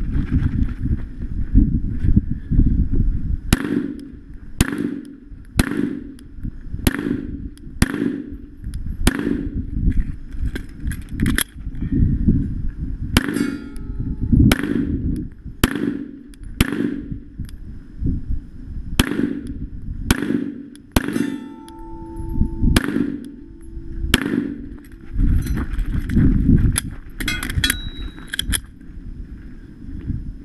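Pistol fired in a long, uneven string during a USPSA course of fire, at roughly one shot a second with short pauses and quick pairs, beginning about three seconds in. Ringing metallic clangs of steel targets being hit mix in with the shots, over a heavy low rumble between shots.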